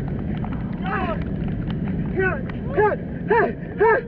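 A man's short shouted calls of encouragement, repeated about twice a second in the second half, over a steady rumble of surf and wind.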